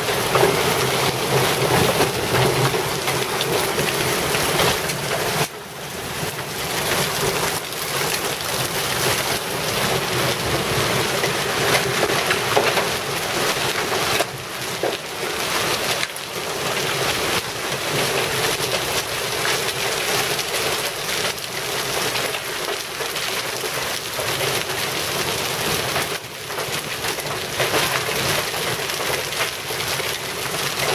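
Heavy hail mixed with rain falling steadily, marble- to half-dollar-sized stones pattering on a concrete walk, lawn and wet street.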